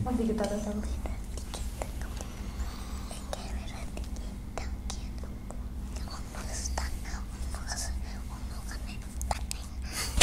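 A child whispering softly, with small mouth clicks and a steady low hum underneath.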